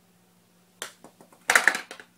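A light click of a golf club striking a golf ball, then a louder, rattling knock of the ball hitting something a little over half a second later.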